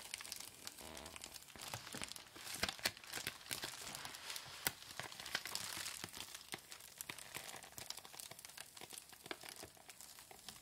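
Plastic bubble mailer crinkling and crackling under the hands as a paper label is slowly peeled off its surface, with a dense run of small crackles and soft tearing.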